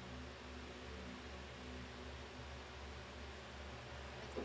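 Faint steady hiss with a low electrical hum underneath; no distinct sounds.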